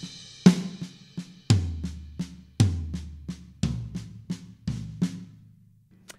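Drum kit playing a fill slowly: right-hand accents on the crash cymbal and floor tom alternating with quiet left-hand ghost notes on the snare drum, in a right, left-left sticking. About three strokes a second, with a louder accent roughly once a second, stopping just before the end.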